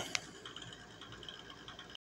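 Faint background hiss with a single short click just after the start.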